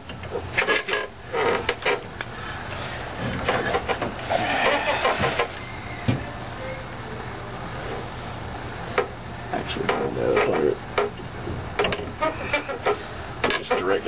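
Irregular metallic clicks and knocks from working a strut spring compressor holding a motorcycle front shock and its new coil spring, over a steady low hum, with voices now and then.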